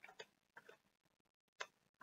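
Near silence, broken by a few faint clicks and taps from a small cardboard box of number cards being handled and opened.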